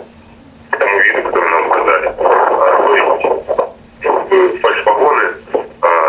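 A person speaking Russian after a brief pause. The voice sounds thin, with no bass or top, like a voice heard over a telephone line.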